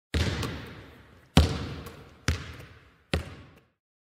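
A basketball bouncing four times on a hard court, each bounce echoing before the next, with the bounces coming a little closer together.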